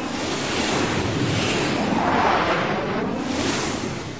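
Sea waves washing, with wind: a rushing noise that swells about halfway through and again near the end.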